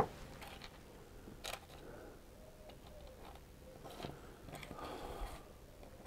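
Faint handling noises of small miniature figures and their bases being moved about on a cutting mat: a sharp click right at the start, further light clicks about a second and a half in and near four seconds, and soft rustling in between.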